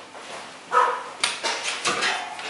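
A bear cub gives one short cry, followed by a few sharp knocks and scrapes as the cubs paw and climb at a wooden door.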